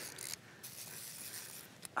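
Faint clicking of a fly reel's click-pawl drag, with a few light ticks.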